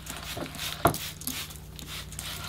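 Dry moss rustling and crackling as it is handled and pressed into a board, with one sharp crackle a little under a second in.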